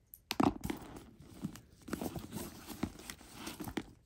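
A hand rummaging inside a tote bag: the contents rustle and knock together in irregular clicks, with a sharper knock about half a second in.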